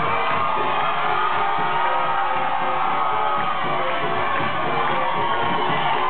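Live jazz band with horns playing, with a crowd cheering and whooping over the music throughout.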